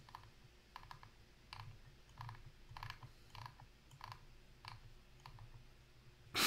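Faint clicks of computer controls, about nine in all, spaced half a second to a second apart, each with a soft low thud, as the web page is scrolled down.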